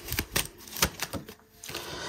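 Deck of oracle cards being handled, cards flicked and drawn off the deck: a string of sharp clicks in the first second, then quieter handling.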